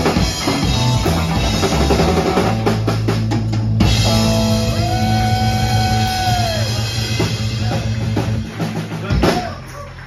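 Live rock band with electric guitars and a drum kit playing the closing bars of a rock and roll song. The band holds a final ringing chord under drum fills, with a sustained guitar note that bends down. A last crash about nine seconds in ends the song, and the sound drops away.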